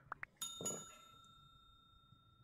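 Two quick soft clicks, then a small bell chime that rings on with a few clear high tones, fading slowly: the click-and-ding sound effect of a subscribe-button and notification-bell animation.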